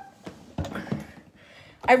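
Handling noise as a heat press is shifted about on a table: a few light knocks and a brief rustle.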